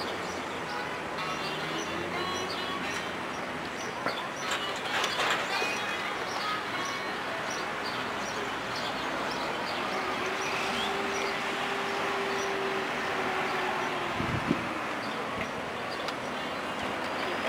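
Steady outdoor town background noise of distant traffic, with the hum of a passing vehicle's engine holding one pitch through the second half and a short low thump near the end.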